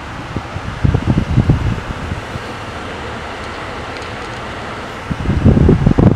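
Steady rushing hiss of air, with low rumbling on the microphone about a second in and again near the end.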